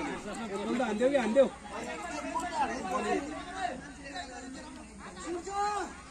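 People talking over one another in casual chatter.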